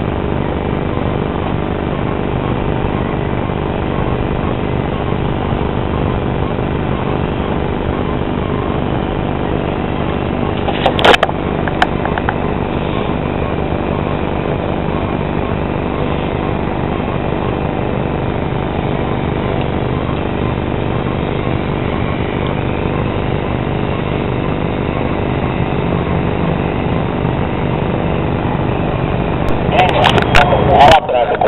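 A steady engine drone with several steady tones held throughout, and a brief knock about 11 seconds in.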